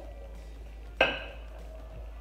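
A single sharp clink about a second in, with a short ring, as a small cup or dish is set down.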